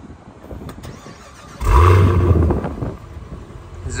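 2024 Cadillac CT5-V Blackwing's 6.2-litre supercharged V8 being remote-started: after a quiet moment it fires about a second and a half in with a loud flare of revs, then drops back to a steady idle.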